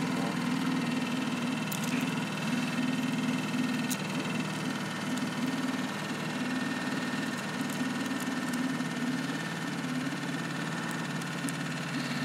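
Boat outboard motor running steadily at low speed while trolling, an even hum throughout.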